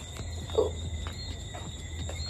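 Crickets trilling steadily at a high pitch in the night, over a low steady rumble, with a woman's brief "ooh" about half a second in.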